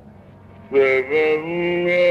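A deep male Carnatic voice enters about three-quarters of a second in, sliding onto a note and holding it steady, opening in raga Kedaragowla.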